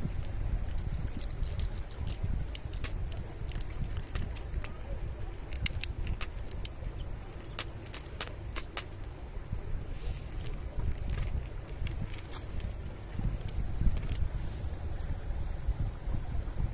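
Cats chewing dry kibble close by: irregular sharp crunches, densest in the first ten seconds, over a steady low rumble of wind on the microphone.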